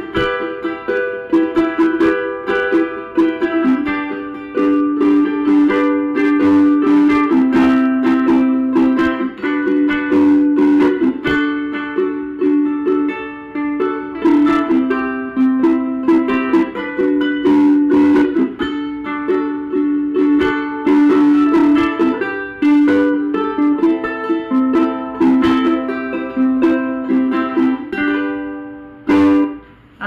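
Vangoa tenor ukulele with Aquila strings played solo, a tune of plucked notes and chords.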